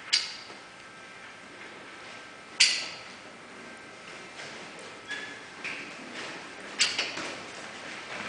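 Three sharp knocks a few seconds apart: the first right at the start, one a couple of seconds later and one near the end, each with a brief ringing tail. A few softer clicks fall between the second and third.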